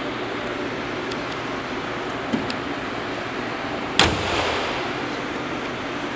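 2012 Mercedes-Benz E350's V6 engine idling steadily with the hood open, then a single loud slam about four seconds in as the hood is shut.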